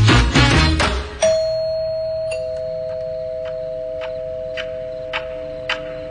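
Salsa music stops about a second in, then a two-tone doorbell chimes: a higher ding and, about a second later, a lower dong, both ringing on and fading slowly. A few faint light clicks sound under the fading chime.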